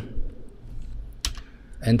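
Enter key struck on a computer keyboard: one sharp click about a second in, after a fainter click near the start.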